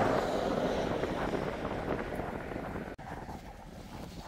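Rushing wind noise on the microphone, fading gradually, broken by an abrupt cut about three seconds in, after which it continues more quietly.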